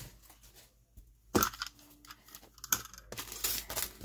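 Small craft supplies being handled and picked up: light clicks and rustling, with a sharper rustle about a second and a half in and a cluster of them near the end.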